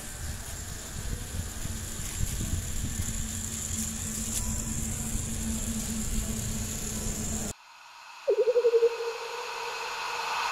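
Small electric motor of a matchbox toy car whirring steadily as the car drives along, over open-air background noise. It cuts off suddenly, followed by a brief warbling tone that dips slightly in pitch.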